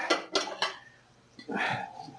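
Dinner plates clattering as one is taken from a stack on a shelf: a few quick knocks in the first half second, then a short scrape of plate on plate near the end.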